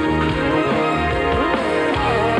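Live rock band playing at steady full volume, drums keeping time under an electric guitar that slides its notes up in pitch in the second half.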